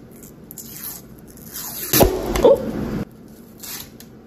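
Paper label of a tube of Pillsbury Grands refrigerated biscuit dough rustling as it is peeled, then the tube bursting open with a sudden loud pop about two seconds in, followed by about a second of crackling as the dough pushes out of the split cardboard.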